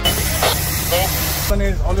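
A vehicle engine running under people's voices. About one and a half seconds in, the sound cuts to the steady low rumble heard inside a Mahindra Thar's cabin on the move, with a man talking.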